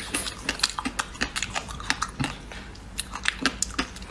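Close-miked crunching and chewing of frozen ice, with many sharp, irregular crackles several times a second.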